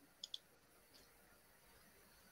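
Computer mouse double-clicked: two quick, faint clicks near the start, then near silence.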